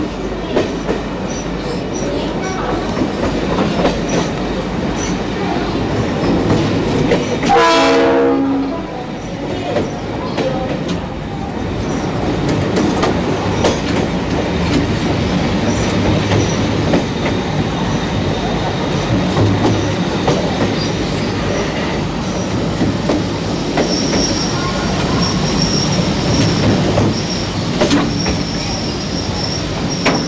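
Train arriving at a station platform: a steady rumble of wheels on the rails, with one horn blast about a second long some eight seconds in and a thin high squeal near the end.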